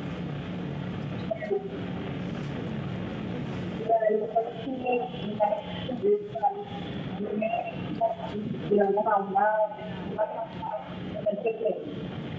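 Telephone line audio on air with interference: a steady hiss and low hum, then from about four seconds in a voice coming through the line, thin and cut off at the top like a phone call.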